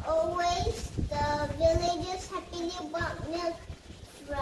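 A young girl singing a short tune, a few held notes that bend slightly, in one child's voice.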